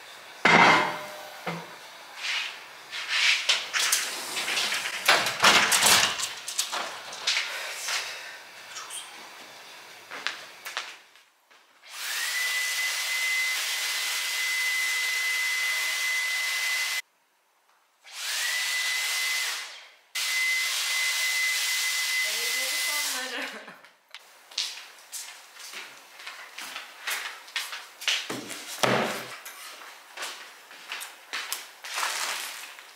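Scattered knocks and clatter of things being handled, then a small electric appliance with a motor and fan running loudly, with rushing air and a steady high whine that rises as it starts up. It cuts off abruptly and starts again twice, before more light knocks near the end.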